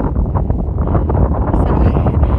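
Strong wind buffeting the phone's microphone: a loud, unbroken low rumble of gusting wind.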